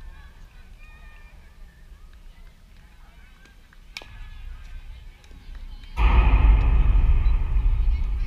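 A softball bat strikes the ball once, a sharp crack with a short ring, about four seconds in. About two seconds later spectators break into loud shouting and cheering.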